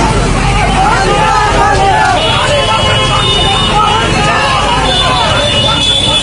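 A crowd of voices shouting and talking over the low rumble of a truck engine. A thin steady high tone comes in about two seconds in.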